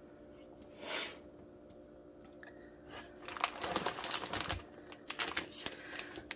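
Plastic packaging crinkling and clicking as a bagged clamshell of wax melts is handled and lifted out of a box of packing peanuts, with a soft rustle about a second in and denser crackling through the second half.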